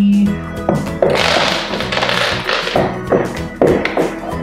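A handful of small glass marbles spills and rattles onto a wooden floor about a second in, among taps and knocks of plastic toy trucks being handled. Background music plays throughout.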